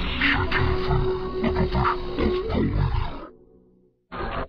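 A TV station logo jingle heavily distorted by video-editor audio effects: dense music with a held note and wavering, gliding tones. It fades away a little past three seconds in, to near silence.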